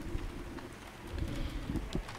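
Room tone in a pause between speakers: a low rumble with a faint steady hum and a few light knocks.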